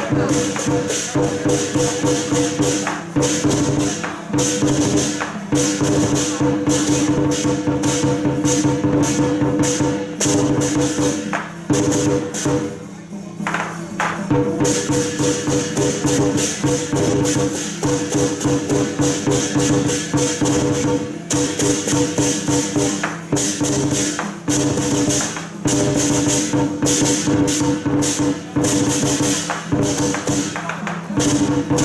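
Lion dance percussion: a drum beaten in fast, dense strokes with clashing cymbals and a ringing gong. The playing drops away briefly about halfway through, then starts up again.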